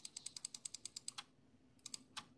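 Faint, quick run of small plastic clicks at a computer, about ten a second for just over a second, then a few more near the end, picked up by a conferencing microphone.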